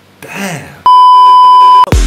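A loud, steady electronic bleep at about 1 kHz, lasting about a second, dropped into a gap in a rap backing track. A brief snatch of voice comes just before it.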